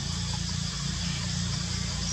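Steady outdoor forest background: a constant high hiss typical of insects over a low steady rumble, with a few faint short chirps.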